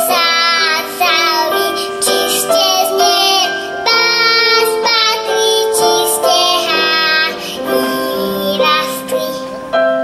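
A young girl singing a Slovak folk song with keyboard accompaniment. Her voice stops near the end, leaving the keyboard playing on its own.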